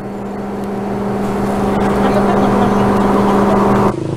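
A steady low hum with a row of overtones at a single unchanging pitch, growing steadily louder over about four seconds and then cutting off abruptly.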